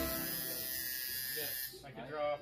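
Electric tattoo machine buzzing steadily while lining a tattoo on skin, stopping shortly before the end.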